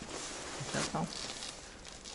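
Low, even rustling and shuffling of a person moving over a dirt cave floor, with one short spoken word about a second in.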